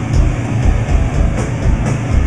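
Heavy hardcore band playing loud and live: distorted guitars and bass over drums, with a pounding low beat and a few crash cymbal hits.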